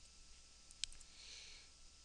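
Computer mouse clicks: a few faint, sharp clicks just under a second in, one louder than the rest, over low room hiss.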